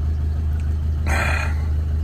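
Low, steady rumble of the Fiat Ducato motorhome's engine idling, with a short slurp from a mug about a second in.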